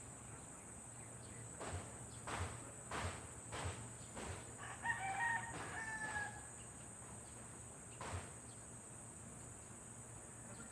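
A rooster crowing once, about halfway through, over a steady high-pitched insect drone. A series of sharp knocks comes before the crow, with one more near the end.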